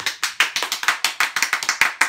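Hand clapping: a quick, loud, even run of about seven claps a second.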